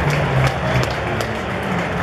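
Ballpark crowd applauding and cheering in a large open stadium, with music playing over the public-address system.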